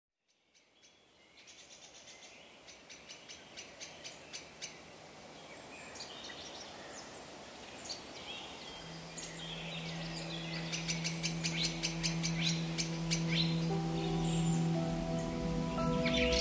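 Birdsong fading in from silence, with bursts of rapid high chirping trills over a soft noise bed, joined about halfway by a low held synth drone and more sustained tones building near the end: the intro of a downtempo ambient track.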